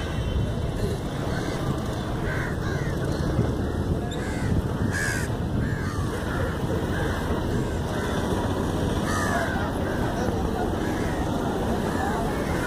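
Crows cawing over and over, short calls about once or twice a second, over a steady low rumble.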